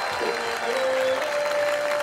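Crowd applauding, with music playing underneath that holds long steady notes.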